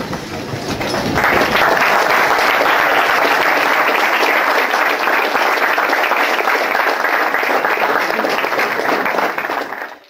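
Audience applauding. The clapping starts thin, swells to full applause about a second in, holds steady, and dies away near the end.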